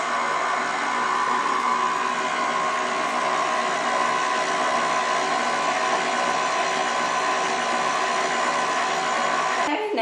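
KitchenAid stand mixer running at a steady speed, its motor whining evenly as the beater works thin chocolate cake batter in the steel bowl. The motor cuts off just before the end.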